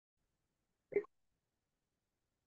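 A single short vocal sound from a man, like a small hiccup or throat noise, about a second in. Otherwise near silence.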